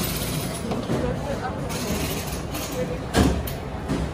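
Steady rush of noise with faint voices in the background and a short, loud knock about three seconds in.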